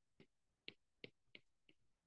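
Faint, short taps of a stylus on a tablet's glass screen while handwriting, about five in two seconds, over near silence.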